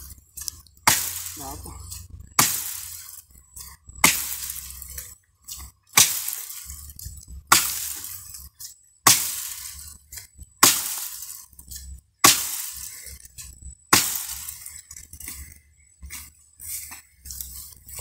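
Axe chopping into a fallen tree branch: about nine sharp blows, roughly one every one and a half seconds, followed by a few lighter knocks near the end.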